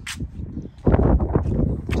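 Strong wind buffeting the phone's microphone, a loud low rumble that sets in sharply about a second in, with footsteps on concrete block paving.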